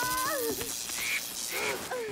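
Storm sound effects, a dense hiss of wind and rain, with two short voice cries about one and one and a half seconds in.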